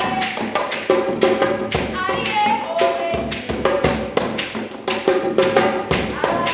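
Live acoustic folk music: an acoustic guitar strummed hard, with sharp percussive strikes several times a second and a woman's singing voice in the middle.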